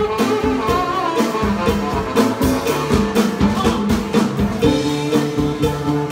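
Live band music with no vocals: a drum kit keeps a steady beat under sustained keyboard notes and a low bass line.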